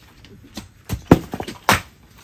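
Steel digging bars and a long-handled tool striking and breaking up a thin concrete base: four or five sharp strikes in the second half, the loudest about a second in and near the end.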